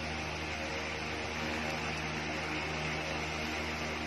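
Steady room background noise: a low hum under an even hiss, with no distinct events.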